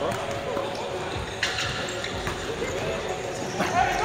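A basketball being dribbled on a hardwood gym floor, with faint voices in a large hall around it.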